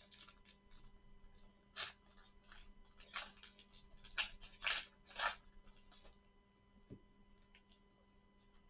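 A plastic trading card pack wrapper being torn open and crinkled by gloved hands, in a run of short ripping and crackling sounds that die away about six seconds in.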